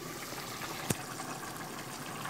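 A pot of chicken in orange sauce boiling on the stove, a steady bubbling hiss, with a single sharp click a little under a second in.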